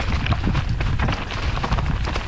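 Ragley Big Wig steel hardtail mountain bike clattering down a rocky trail: a fast, irregular run of knocks and rattles from the tyres, chain and frame over a steady low rumble.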